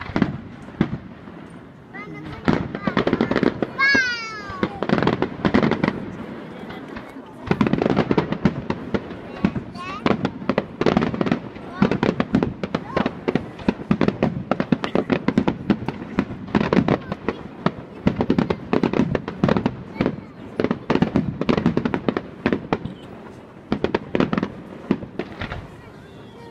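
Aerial fireworks display: a dense, rapid run of sharp cracks and bangs from bursting shells and crackling stars that starts about two seconds in and keeps going until just before the end. A brief whistle rises and falls about four seconds in.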